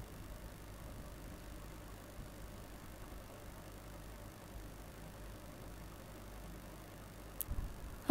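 Faint steady room hiss with a few light clicks near the end.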